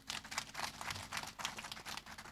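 Sheets of paper rustling and crinkling close to a microphone, in a quick run of irregular crackles that stops suddenly just after the end.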